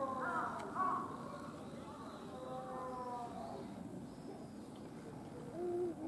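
High-pitched human voices calling and talking in snatches, loudest in the first second, again around the middle, and briefly near the end, over a steady background hum.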